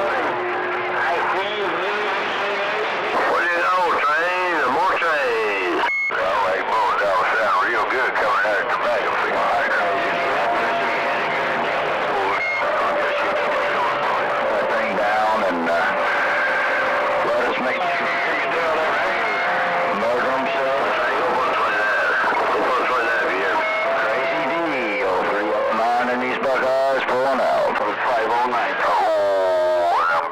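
CB radio receiver audio from a crowded long-distance skip channel: several distant stations talking over one another, their voices garbled and unreadable. Steady whistling tones run under the voices, a low one at the start and higher ones from about ten seconds in until about twenty-five seconds.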